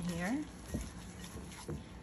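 Gloved hand mixing raw pork pieces with seasoning in a glass bowl: soft wet handling sounds, with a couple of faint taps.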